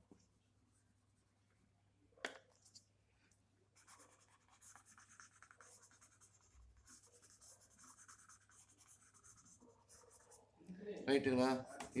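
Faint, irregular scratching and rubbing of a drawing tool worked over sketchbook paper in short strokes, starting about four seconds in, with one short tap about two seconds in.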